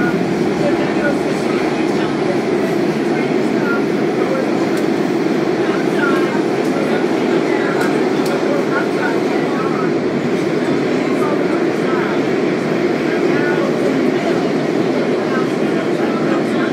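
WMATA Kawasaki 7000-series metro car running at speed, heard from inside the car: a steady, loud rumble of wheels and running gear on the rails that holds even throughout.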